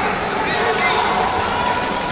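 Indistinct voices of spectators and coaches in a sports hall, a steady mix of shouting and chatter with no clear words.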